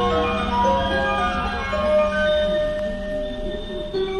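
A chiming electronic melody of bell-like notes plays over the low rumble of an electric commuter train pulling out along the platform.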